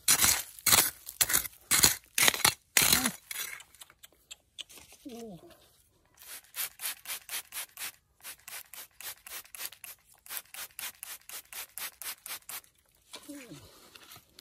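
Small metal hand trowel scraping and digging into dry, gritty soil in a few loud strokes, then a trigger spray bottle squeezed over and over, about five squirts a second, misting water onto a raw amethyst crystal.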